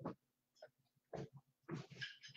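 Faint, short breaths and throat sounds, a few scattered puffs with near silence between, as a woman recovers from a coughing fit.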